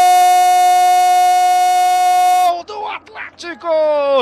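A Brazilian football commentator's long, drawn-out 'Gol!' shout, held at one steady pitch. It breaks off about two and a half seconds in and quick commentary follows.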